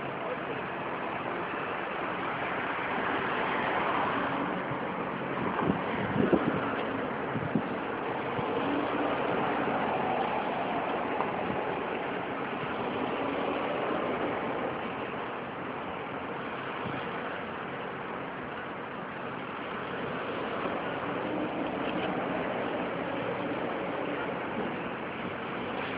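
Steady downtown city background noise, traffic with faint distant voices, with a few sharp knocks about six seconds in.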